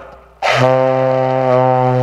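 Saxophone holding one steady low note, starting about half a second in. It is a demonstration of the instrument's low register.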